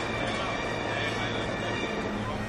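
Steady rushing roar of a large musical fountain's water jets, with show music and crowd voices underneath.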